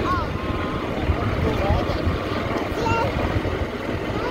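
Wind buffeting the microphone and low road rumble while riding in an open-sided cart, steady throughout with a few brief voice sounds over it.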